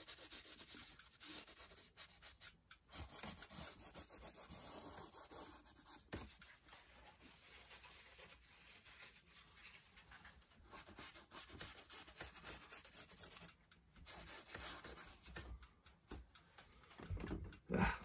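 Paper towel dampened with Gamsol rubbed over an oil-stained canvas panel to lift paint off: a faint, uneven scrubbing.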